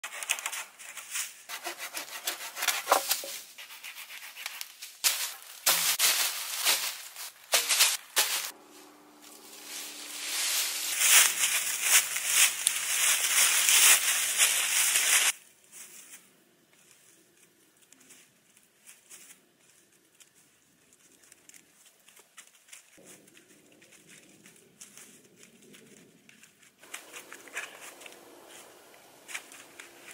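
A hand saw rasps through a wooden pole in repeated strokes, building to a fast continuous run of sawing that cuts off suddenly about halfway through. After that there is only faint rustling and light knocking of sticks and leaf litter as poles are handled.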